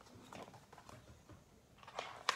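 Faint rustles and small taps from a hardcover picture book as it is handled and turned in the hands.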